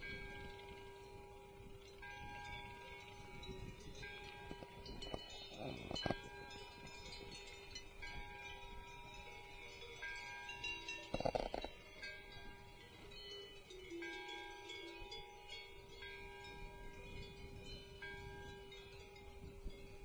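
Chapel bell tolling the strokes of noon, faint, one stroke about every two seconds, each ringing on into the next.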